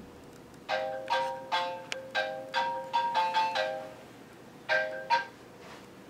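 Mobile phone ringtone playing a quick tune of short, fading notes, pausing, then two more notes before it stops.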